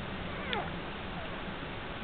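Shetland sheepdog puppy giving a short high squeak about half a second in, with a couple of fainter squeaks after it, over a steady low hum.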